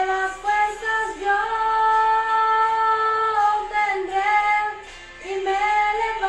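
A young woman singing a Spanish-language worship song solo. She holds one long note through the middle and pauses briefly a little before the end.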